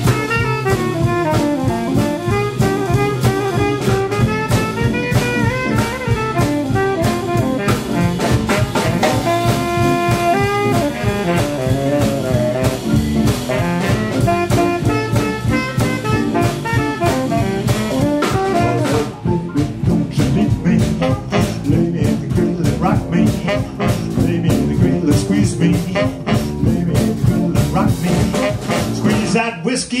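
A live jump blues band playing an instrumental break: saxophones and trumpet carry the melody over drum kit, piano, guitar and upright bass, with a steady swinging beat. The singing comes back in at the very end.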